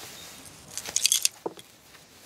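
A brief metallic jingle of small objects shaken together, like keys, about a second in, followed by a soft knock.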